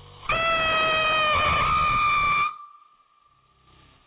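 Novelty chicken firework giving a loud, squealing whistle for about two seconds, its pitch sagging slightly. It cuts off abruptly, leaving a thin, fainter tone that fades out a moment later.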